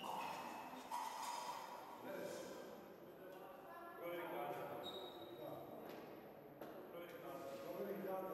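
Indistinct voices talking in a large, echoing hall, with a couple of sharp knocks, one about a second in and one near the end.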